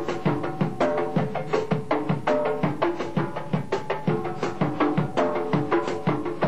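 Drum kit played solo: a quick, even stream of sharp, pitched drum strokes over a lower drum beat about twice a second.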